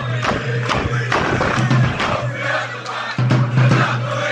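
A packed crowd of football supporters chanting loudly together, with rhythmic clapping running through the chant.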